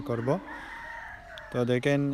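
A rooster crows once, a call of about a second that holds steady and then falls in pitch, fainter than the man's voice around it.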